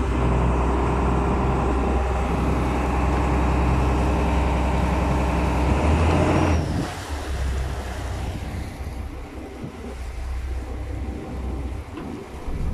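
Fishing boat's engine running hard with a steady drone, then throttled back about six and a half seconds in, leaving wind and water noise over the quieter engine.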